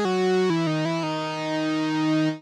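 Arturia CS-80 V4 software synthesizer playing a bright lead patch one note at a time, the pitch stepping down a few times with short portamento glides before the last note is held. In mono legato mode the envelopes do not retrigger between notes, so the line sounds smoother.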